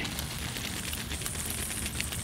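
Many small, faint ticks and crackles of water dripping onto leaves and wooden branches in a freshly misted snake enclosure, over a steady hiss.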